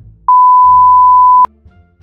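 An electronic beep: one loud, steady, pure tone lasting just over a second, starting about a third of a second in and cutting off sharply with a click.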